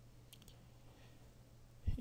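Quiet room tone with a steady low hum, a few brief faint clicks about half a second in, and a short low thump near the end.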